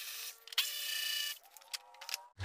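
Cordless electric ratchet whining in two short runs, a brief one and then a longer one, as it backs out the headlight mounting bolts.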